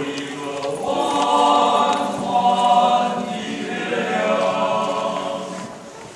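Men's choir singing in harmony, holding long sustained notes, with a short break between phrases near the end.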